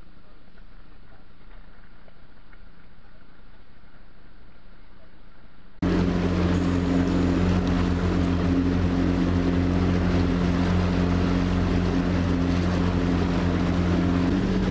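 A faint, muffled background, then about six seconds in an abrupt cut to a boat's motor running steadily with a low, even hum.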